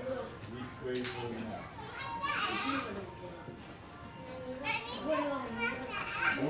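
Children's voices and chatter in the background, with higher, louder child voices calling out about two seconds in and again near the end.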